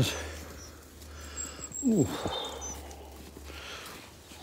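A brief wordless vocal sound from a man, falling steeply in pitch, about two seconds in, over a steady low hum, with a few faint high chirps around it.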